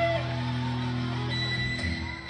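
Karaoke backing track of a Malaysian rock ballad, guitar-led, playing through PA speakers in an instrumental passage. The singer's long held note ends just at the start.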